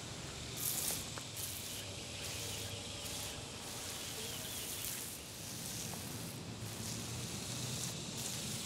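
Hand pump sprayer's wand nozzle hissing as it sprays a fine mist up into an oak tree; the steady hiss breaks off briefly several times.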